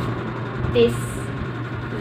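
A steady low hum runs under a woman's voice, which says one short word.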